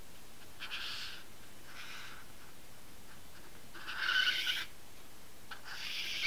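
Felt-tip marker squeaking across paper in a few short strokes as a leaf outline is drawn, the longest and loudest stroke about four seconds in.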